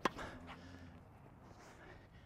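A single sharp pop of a tennis racket striking the ball on a forehand, right at the start. Faint outdoor background follows.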